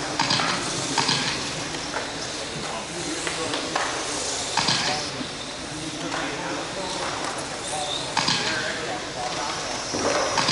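1/12-scale electric RC race cars running laps on an indoor track: a steady hiss with a few sharp clicks.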